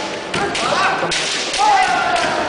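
Kendo fencers' long, drawn-out kiai yells, with a thud about a third of a second in and another about a second in.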